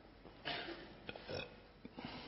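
A man's soft breath and throat noises close to a microphone during a pause in speaking: two brief breathy swells, about half a second and about a second and a quarter in.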